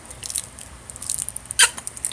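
A man chewing hard candy cane: quiet mouth sounds with a single sharp crunch about a second and a half in.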